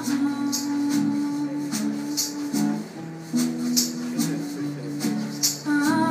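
Live band playing an instrumental passage between sung lines: guitars holding chords, with a hand shaker marking the beat in short regular strokes.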